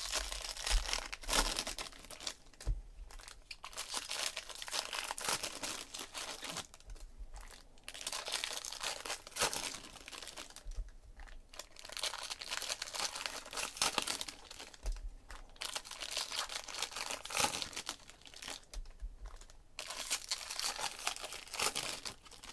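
Foil trading-card pack wrappers crinkling and tearing open, with cards shuffled and handled, in irregular bursts of rustling.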